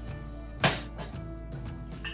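One sharp knock about two-thirds of a second in: a kitchen utensil striking a metal pot while a white sauce is stirred. Steady background music plays underneath.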